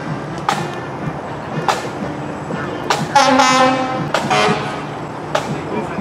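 A drum beating a steady marching cadence, about one stroke every second and a bit, with a loud horn blast about three seconds in and a shorter one about a second later.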